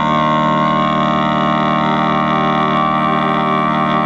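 Saxophone quartet holding one long sustained chord, which changes just before and then stays steady.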